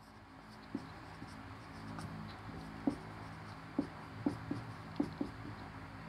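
Marker pen writing on a whiteboard: faint strokes with light ticks of the tip touching down on the board, over a low steady hum.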